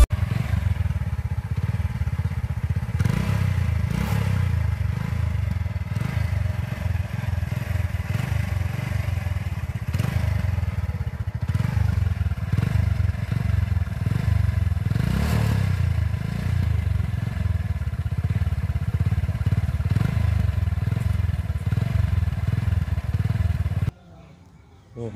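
Hero Splendor motorcycle's single-cylinder exhaust heard close at the silencer tip, the engine running steadily with a few brief louder swells.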